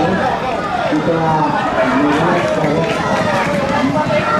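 Excited speech with no pause, like a race commentary over the galloping field, loud and steady.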